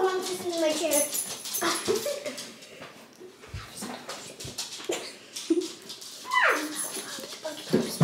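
A pet dog whining indoors in a few short, high calls, one of which slides sharply down in pitch near the end.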